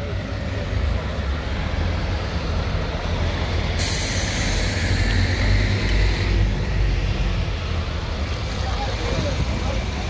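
Double-decker buses running in slow traffic with a steady low engine rumble. About four seconds in, a loud pneumatic hiss of a bus's air brakes starts suddenly and lasts about two and a half seconds.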